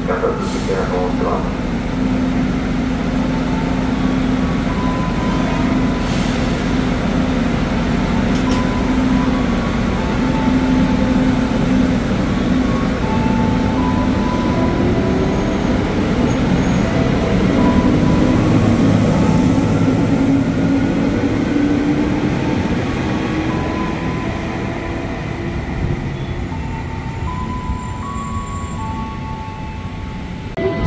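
JR 205 series electric commuter train pulling out: a steady hum at standstill, then from about halfway a rising motor whine as it accelerates away. It is loudest a little past halfway and fades toward the end.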